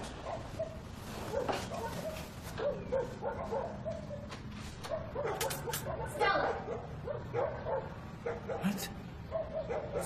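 Several dogs making short, high cries over and over, with no pause.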